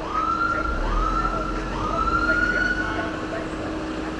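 An emergency vehicle siren gives three short rising whoops about a second apart, each sweeping up and holding its pitch, with a low rumble underneath.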